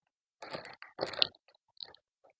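Potting soil poured from a hand scoop into the cells of a plastic seed tray: a few short, soft, crumbly rustles, two about half a second and a second in and a fainter one near the end.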